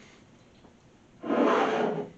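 A brief scraping rub of a container moved on a kitchen countertop, lasting about three-quarters of a second and starting just past a second in.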